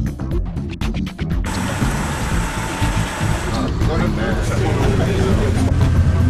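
Guitar music that cuts off abruptly about a second and a half in, followed by the steady road and engine rumble of a moving vehicle heard from inside, with people talking. The rumble grows stronger in the second half.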